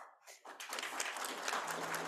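Audience applauding, starting about half a second in and quickly building to a steady level.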